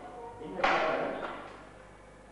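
The metal door of a laboratory test cabinet being opened: a sudden loud thud about half a second in, fading away over about a second. A man's voice is heard briefly at the start.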